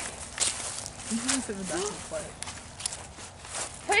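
Footsteps of people walking, a series of irregular soft steps, with faint talking in the background partway through.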